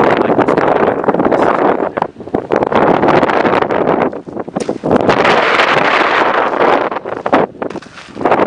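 Strong wind buffeting the microphone, loud and gusty, dropping away briefly three times.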